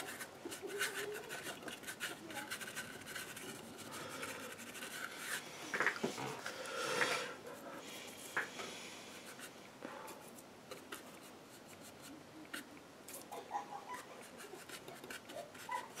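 Paintbrush bristles scrubbing and dabbing paint on a gessoed board and working paint on a paper palette, in faint scratchy strokes.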